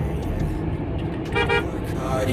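Steady low road rumble heard from inside a moving car's cabin, with one short vehicle horn toot about one and a half seconds in.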